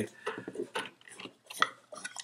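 A small wooden box being handled and opened: faint knocks and clicks of wood, with one sharper click about one and a half seconds in.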